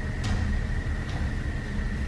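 Steady low rumble and hiss of outdoor background noise picked up by a camera microphone in the dark, with a faint steady high-pitched tone running through it.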